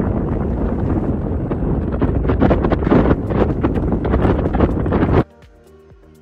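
Wind rushing and buffeting hard against the microphone through an open car window while driving, cutting off suddenly about five seconds in.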